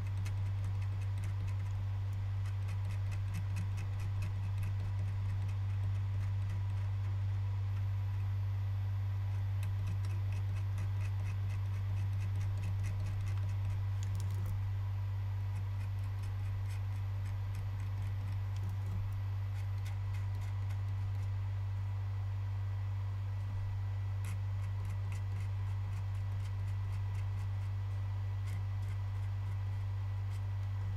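Steady low hum throughout, with faint light ticks and scratches of a tool tip being worked over a corroded circuit board, clustered in two spells, one about ten seconds in and one near the end.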